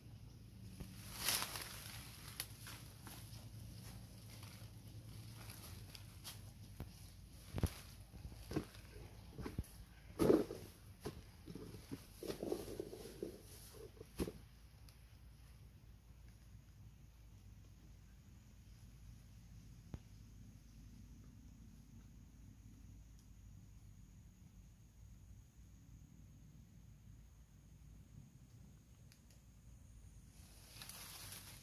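Faint outdoor quiet with scattered light clicks and rustles through the first half, the loudest about ten seconds in, then only a steady faint background.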